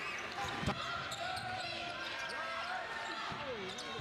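Basketball game audio: a basketball bouncing on the hardwood court, with two sharp bounces in the first second, over steady crowd murmur and scattered voices in the arena.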